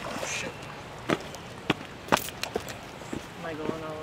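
A hooked fish splashing at the water's surface in a short burst, followed by a few sharp clicks or slaps; voices are faint near the end.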